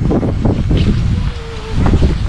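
Wind buffeting the camera microphone: an irregular low rumble that rises and falls.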